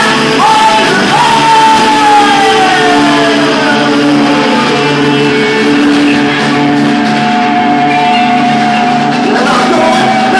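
Live rock band playing loudly, with electric guitars, drums and singing voices. A long note slides down over several seconds, then a long note is held.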